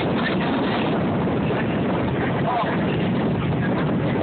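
Steady rumbling rush of a moving train heard from an open-air passenger car, with wind buffeting the microphone.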